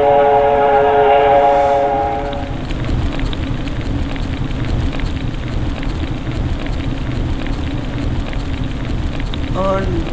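Cartoon steam-whistle sound effect, a steady many-toned whistle that stops about two and a half seconds in. It is followed by a sound effect of fire burning, a steady rush with many small crackles.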